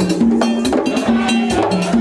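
Haitian Vodou ceremonial drumming: fast, steady strikes of a metal bell over hand drums. Voices hold low chanted notes that step between pitches over the beat.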